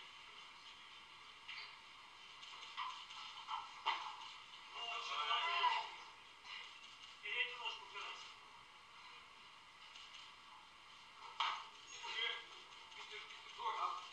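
Faint voices in a hall, one rising briefly about five seconds in, with a few soft knocks.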